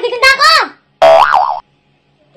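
A high-pitched vocal cry that ends just under a second in, followed by a short cartoon-style 'boing' sound effect whose pitch bounces up and down.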